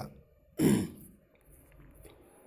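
A man clearing his throat once, a short burst a little over half a second in.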